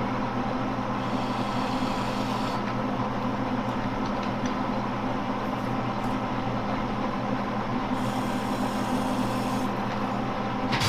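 Monarch engine lathe running with the spindle turning, a steady drone holding several constant pitches from its gear train.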